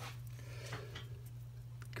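Steady low hum with a couple of faint clicks, one midway and one near the end, as a small lock cylinder is picked up and handled.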